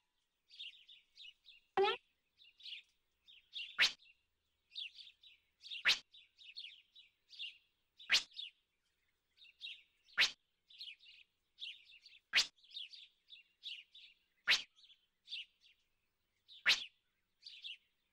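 Birdsong ambience: many small birds chirping and twittering, with a quick downward-sweeping call repeating about every two seconds.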